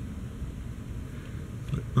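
Steady low background hum with no distinct knocks or clicks, and a short spoken word near the end.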